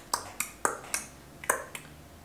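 A person snapping their fingers over and over: about six sharp snaps in two seconds, unevenly spaced.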